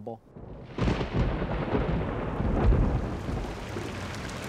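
Thunder rumbling in a rainstorm, breaking in suddenly about a second in and loudest near the middle, over steady falling rain that carries on as the rumble fades.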